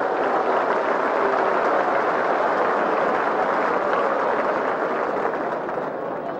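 Stadium crowd cheering and applauding, a steady wash of noise that dies down near the end.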